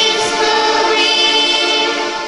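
Church choir singing a hymn in long held notes.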